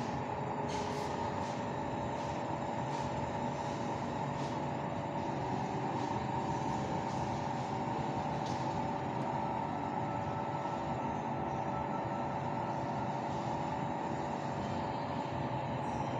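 Steady room noise: a continuous hum and hiss, like ventilation or air conditioning, with a few faint ticks.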